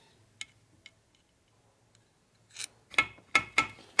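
Metal-on-metal clicks as a steel thrust washer is worked into line inside a Harley-Davidson 4-speed transmission case. A couple of faint ticks come first, then a short scrape and a quick run of sharp metallic clicks near the end. The washer is overhanging the bore and hanging up the shaft.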